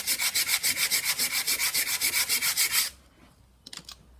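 Sandpaper rubbed by hand in quick back-and-forth strokes, about seven a second, over a softwood board to smooth a hardened hot-melt filler repair in a knot hole. The sanding stops about three seconds in, followed by a few faint clicks.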